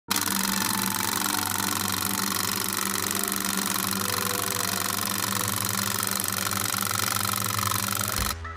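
Film projector running: a steady, rapid mechanical clatter over a low hum.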